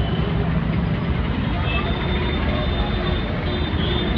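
Steady street background noise: the low rumble and hum of traffic, with faint voices in the background.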